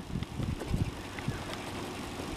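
Faint scraping of a steel wrench's edge rubbing the coating off a scratch-off lottery ticket, with small irregular ticks over a low outdoor rumble.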